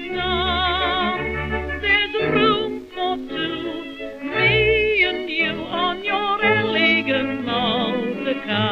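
Music from a 1932 music-hall song recording: a melody with a strong, even vibrato over band accompaniment. The sound is the thin old-record kind, with no high treble.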